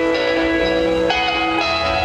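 Live rock band playing, the electric guitars ringing out sustained, chiming chords that change every half second or so, with little drumming under them.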